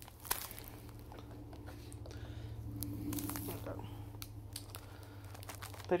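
Crinkling and tearing of a wafer cookie package being handled and pulled open, with scattered crackles and clicks, the sharpest just after the start. A low steady hum runs underneath.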